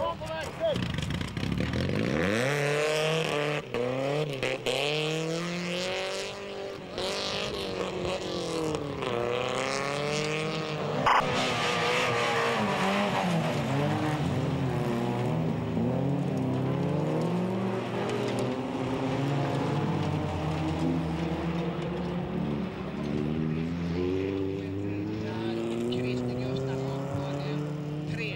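Race car engines revving hard on a dirt track, their pitch climbing and dropping again and again as the cars accelerate and change gear, often several engines at once. A sharp knock sounds about eleven seconds in.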